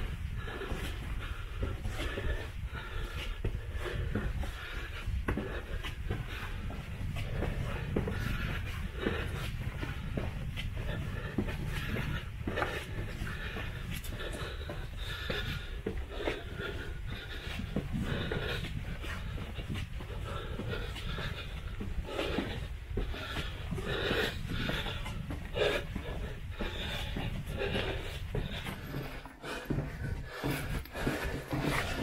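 A man breathing hard as he moves stooped through a low, narrow tunnel, with irregular scuffing and rustling of his steps and clothing close to the microphone over a steady low rumble.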